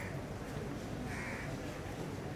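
A crow cawing: short hoarse caws, one right at the start and another about a second in, over a low steady background hum.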